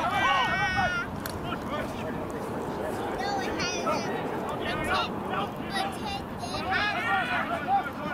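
Rugby spectators shouting encouragement: a long held shout in the first second, then scattered short calls over a steady background hiss.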